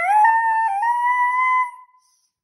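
A child's voice holding one long, high, sung 'ooh' of excitement. It steps up in pitch twice and then stops just before the end.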